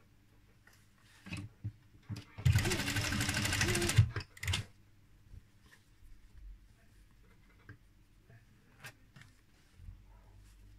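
Sewing machine stitching a seam through layered cotton fabric in one short run of about a second and a half, starting a little over two seconds in. Short soft knocks of the fabric being handled come just before and after it.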